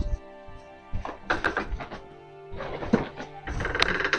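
Soft background music, with a few dull thuds and knocks of luggage bags being picked up and carried.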